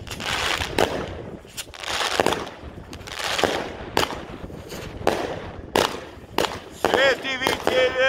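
Aerial fireworks going off in an irregular string of sharp bangs, about one or two a second, each followed by a brief crackle of bursting sparks.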